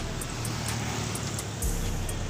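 Road traffic noise with a low engine rumble. About one and a half seconds in, a minibus engine grows louder as it approaches close by.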